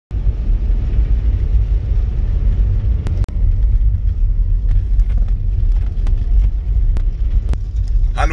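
Car cabin road noise while driving on a snow-covered motorway: a steady low rumble, with a few sharp clicks scattered through it and a brief break about three seconds in.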